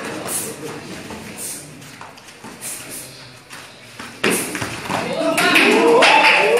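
Muay Thai sparring in a gym: scattered thuds of strikes and feet on the mat under spectators' voices, then about four seconds in a sudden loud impact followed by several people shouting and exclaiming.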